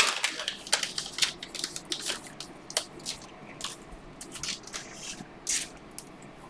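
Cellophane wrapper of a pack of trading cards crinkling in the hands, then cards sliding and flicking against each other: a run of faint, irregular crinkles and clicks, loudest at the start.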